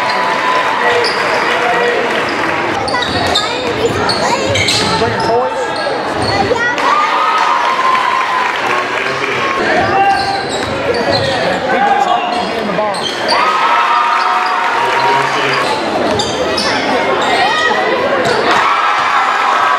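Basketball game sound in a gym: a ball bouncing on the hardwood, short squeaks from sneakers on the court, and a steady wash of crowd voices echoing in the hall.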